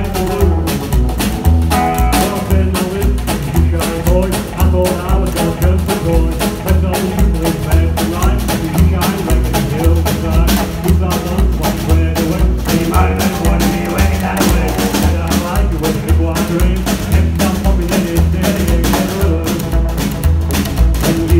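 Live trio of upright double bass, electric guitar and drum kit playing a song, the bass pulsing in a steady beat under a guitar line and drum hits.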